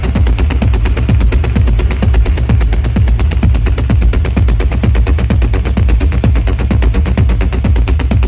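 Dark techno music with a heavy, steady bass and fast, even ticks in the high end.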